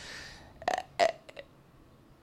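A breath drawn in, then two short throat sounds, about a third of a second apart, from the woman between phrases.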